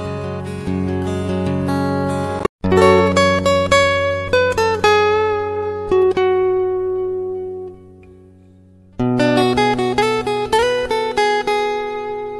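Background music on plucked acoustic guitar, a run of single notes ringing out. It breaks off for an instant about two and a half seconds in, fades low about eight seconds in, and picks up again a second later.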